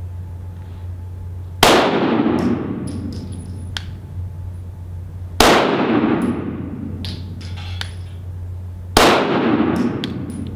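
Three single pistol shots from a five-inch Walther PDP, fired slowly about three and a half seconds apart, each with a long echo off the walls of an indoor range. These are deliberate shots for zeroing the red dot.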